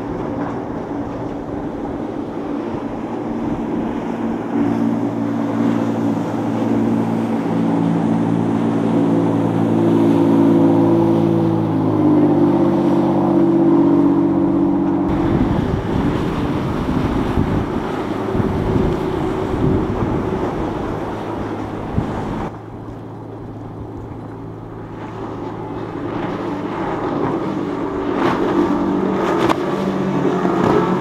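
Motorboat engines running past. The steady engine note climbs slowly in pitch, then about halfway through breaks into a rougher, churning sound. It falls away about two-thirds of the way in, and another engine builds up near the end.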